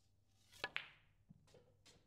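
A snooker cue tip strikes the cue ball about half a second in and, a split second later, the cue ball clicks into the black in a stun run shot played with a millimetre of side. A few faint knocks follow.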